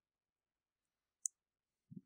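Near silence, broken once a little past the middle by a single short, sharp click.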